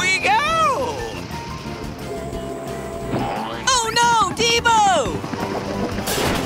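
Cartoon voices crying out with long rising-and-falling exclamations, once at the start and again about halfway through, over upbeat background music.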